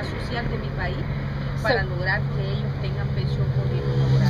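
Voices in the background, with a short phrase about halfway through, over a steady low hum.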